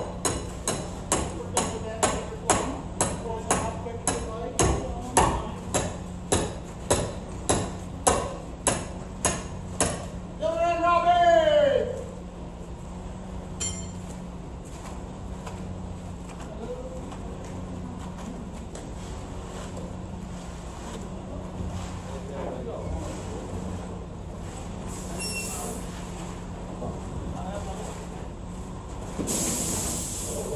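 Steady, evenly spaced metallic hammer strikes, about two a second, ring out for roughly ten seconds over a machine engine running steadily. A person's voice then calls out once, rising and falling. The engine runs on, with a short hiss near the end.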